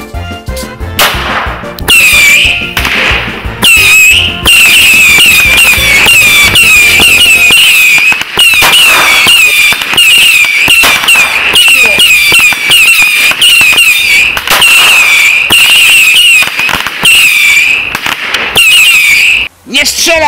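A ground firework battery (cake) going off: a fast string of crackling bangs with short whistles repeating about twice a second. It starts about a second in and stops just before the end.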